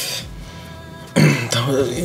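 A man's voice: a breathy sound at first, then about a second in a loud, wordless vocal sound that runs straight into speech.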